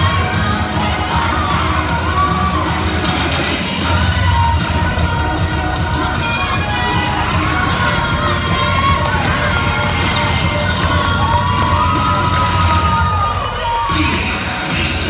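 Gym crowd cheering and shouting, with high-pitched yells rising and falling throughout, over the routine's music.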